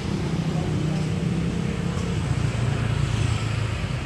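Steady low drone of nearby motor traffic, its pitch settling a little lower about halfway through.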